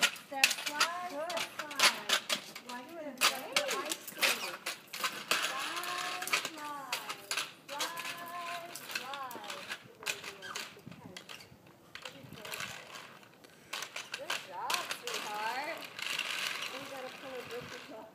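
Plastic roller-skate wheels clicking and rattling irregularly over rough pavement as a child is led along on skates, with voices talking between the clicks.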